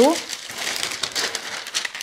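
Thin paper pattern sheets rustling and crinkling as they are lifted and folded over.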